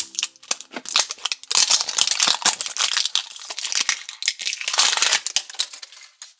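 Clear plastic shrink wrap crinkling and tearing as it is peeled off a plastic toy egg, a dense run of irregular crackles that stops near the end.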